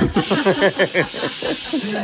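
A woman laughing in quick, repeated pulses over a steady hiss that starts and cuts off abruptly.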